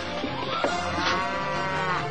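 A cow mooing: one long call, starting about half a second in, that rises and falls in pitch, with a short knock just before it.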